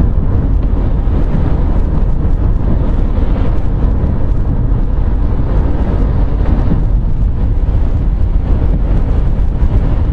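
Steady road and engine noise inside the cabin of a moving Mercedes car, a deep even rumble with no breaks.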